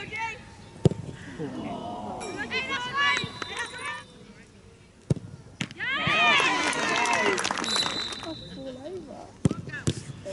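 Penalty kicks: several sharp thumps of a football being struck, about a second in, about five seconds in and near the end, with bursts of players' high-pitched shouting and cheering between them, loudest just after the kick about five seconds in.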